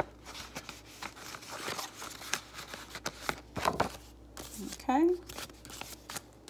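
Paper bills and envelopes rustling in hand, then clear plastic zipper pockets of a ring binder flipped and crinkling. A brief vocal sound about five seconds in.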